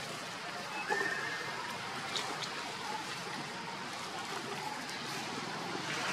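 A young macaque gives a short, high-pitched squeal about a second in. Faint scuffling clicks sit over a steady background hiss.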